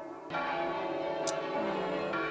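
Bells ringing in the film's soundtrack: a dense, sustained ringing of many tones that swells up a fraction of a second in and holds steady.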